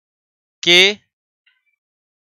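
A man's voice saying one drawn-out syllable about half a second in, with dead silence around it.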